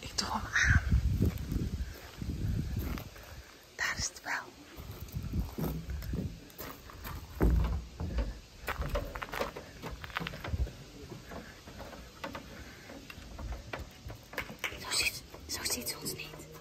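Wind buffeting the microphone in irregular gusts, with footsteps on a wooden boardwalk.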